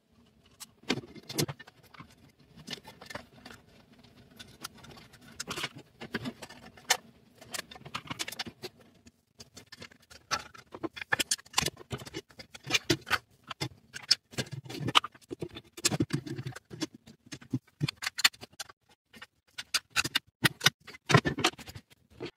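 Irregular small clicks, taps and scrapes of metal and plastic as M4 screws are driven by hand with a hex screwdriver, fastening a 3D-printed mount and lazy Susan bearing to an aluminium plate.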